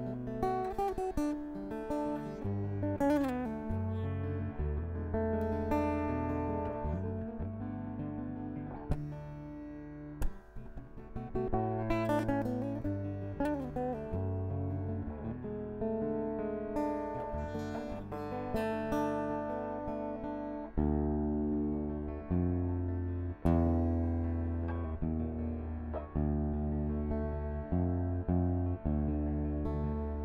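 Acoustic guitar playing an instrumental passage of plucked and strummed notes over sustained low notes, with a few notes bent in pitch.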